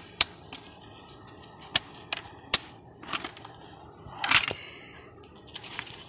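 Hard plastic Glock pistol case being handled and opened: a scattering of sharp plastic clicks and snaps from the latches and lid, with a louder scraping rustle about four seconds in.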